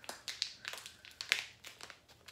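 Small resealable plastic zip-top bag crinkling as its seal is pulled open at one corner: a run of sharp crackles and clicks, the loudest about two-thirds of the way through.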